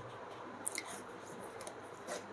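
Faint rustle of a paperback manga's paper pages being handled and turned, with a short crisp paper flick about two-thirds of a second in.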